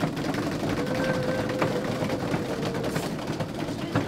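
Suspense drumroll before a winner is named: a dense, rapid roll that builds up and keeps going, with one long held tone over it through the first half.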